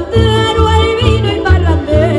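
Live Canarian folk ensemble playing: plucked strings and accordion over a bass that pulses about two and a half times a second, with a held melody line that wavers in pitch.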